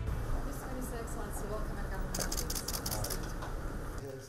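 Camera shutters clicking in rapid bursts, the densest run about halfway through, over people talking.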